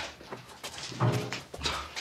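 People being bundled together: clothing rustles and feet shuffle, with one brief frightened vocal sound about a second in.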